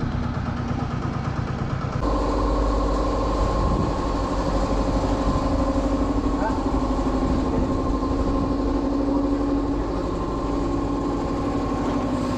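An engine idling steadily, with an even low pulse and no change in speed.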